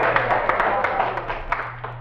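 Closing bars of a 1950s Nashville country band's number fading out, with a steady low hum underneath from the old transcription disc.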